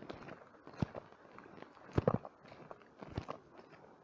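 Footsteps: a few uneven thuds, roughly a second apart, with faint rustle between them.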